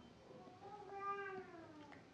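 A faint animal cry: one drawn-out call about a second long whose pitch rises and then falls.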